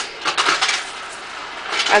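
Loose coins clinking together as hands pick them up and move them, a quick run of small clinks in the first second.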